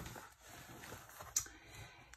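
Faint handling of a paper notebook being closed: soft rustle of card pages and cover, with one light tap about one and a half seconds in.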